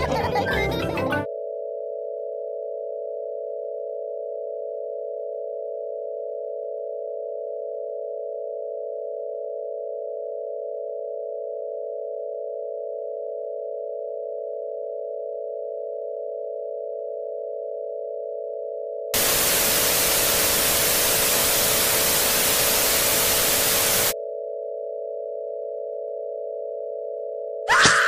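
A steady electronic tone, a few close pitches sounding together, held almost without change; from about two-thirds of the way through, five seconds of loud white-noise static drown it, then the tone returns. In the first second the cartoon's music cuts off.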